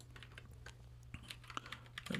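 Faint computer keyboard typing: a quick run of scattered key clicks as a file path is typed in.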